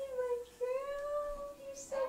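A high, wordless voice cooing in two long, drawn-out notes that glide gently up and down.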